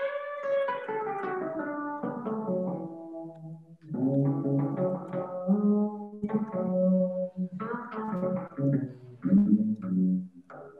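Eight-string fretless guitar being played. A note is struck at the start and its pitch slides slowly down as it rings, then from about four seconds comes a run of plucked notes over lower bass notes.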